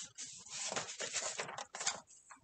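Paper pages of a picture book being handled and turned by hand: a run of irregular soft rustles.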